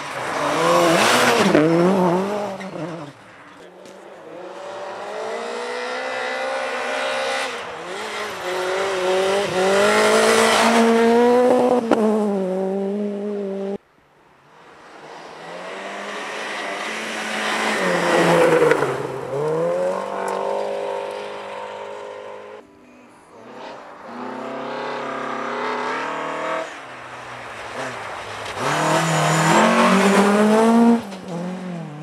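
Volvo 240 rally cars driven hard past one at a time, engines revving high and falling away through gear changes. The passes are joined by sudden cuts, about fourteen and twenty-three seconds in.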